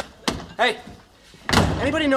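Apartment door opening with a short knock just after the start, then shut with a slam about a second and a half in.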